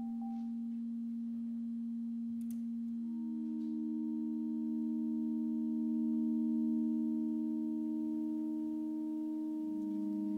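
Grand piano strings sustained by a small handheld electromagnetic string driver held against them, giving steady pure drone tones with no attack. One low tone sounds alone until about three seconds in, when a second, slightly higher tone joins; the two swell midway, and near the end the low tone starts to waver and beat. A few faint clicks come from the hand and device on the strings.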